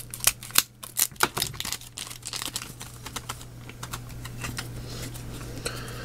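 Foil booster pack of Japanese Pokémon cards being torn open and crinkled: a run of sharp crackles, densest in the first two seconds, then fainter ticking as the cards slide out and are handled. A low steady hum runs underneath.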